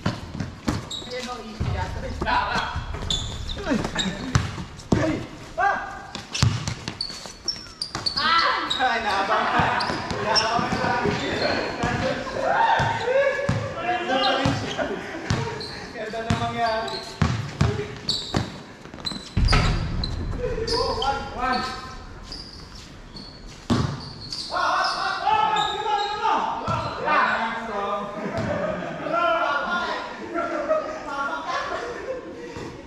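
A basketball bouncing and being dribbled on a hard court in a run of sharp thuds, with players shouting to each other over it for most of the stretch.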